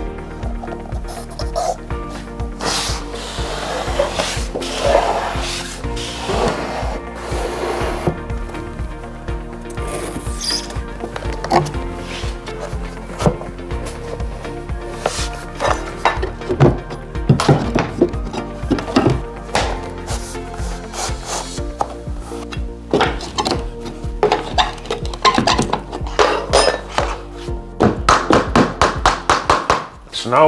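Background music over the handling sounds of vinyl plank flooring being laid: planks rubbing and knocking on the floor, then a quick run of rubber mallet taps near the end.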